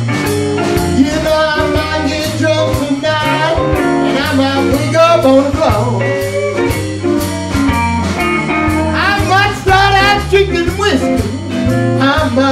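Live blues band playing an instrumental passage over a steady bass and drum groove, with guitar and a lead line of bending, wavering notes.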